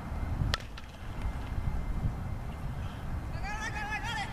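A single sharp crack of a softball being struck, about half a second in, during outfield fly-ball practice, over a steady low rumble. Near the end comes a short wavering high call.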